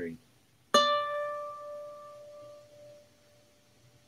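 A single note plucked on a baritone ukulele about a second in, ringing out and slowly fading over two to three seconds: the closing note of the piece's ending.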